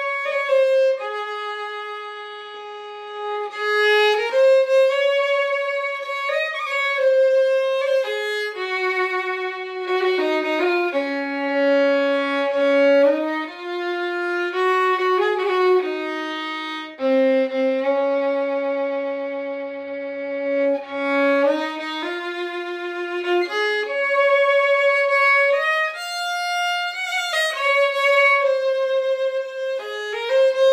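Solo fiddle playing a slow Irish traditional melody in long, held, bowed notes that step up and down in pitch.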